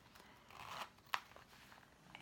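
Small smooth-leather wallet being handled: a soft rustle, then one sharp click a little past a second in.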